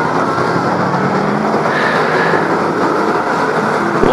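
Several BriSCA F1 stock car V8 engines running hard as a pack of cars races past, a loud, steady, overlapping engine noise.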